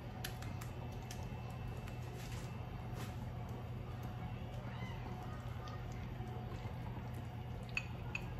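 Hands squishing a bread slice around in thick, wet gram-flour (besan) and vegetable batter: faint squelches and small clicks over a steady low hum.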